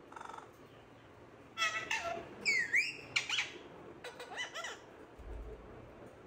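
Pet parakeet calling: a quick series of short, high, pitched calls, one sliding down and back up, for a few seconds starting about one and a half seconds in.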